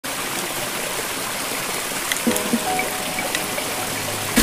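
Small stream trickling and splashing over rocks into a pool, a steady even rush of water. Soft background music with held notes comes in about halfway.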